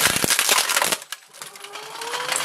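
Industrial shredder crushing a computer keyboard's plastic and metal casing: a dense run of cracking and crunching that drops off sharply about a second in. A faint rising whine follows.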